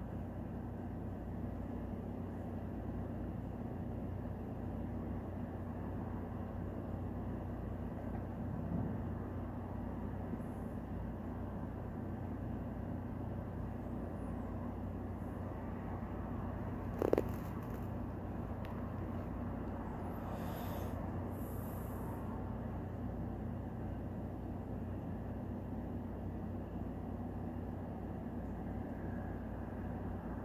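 Steady low hum over a bed of even background noise, like a room's fan or air conditioning, with one short sharp click partway through.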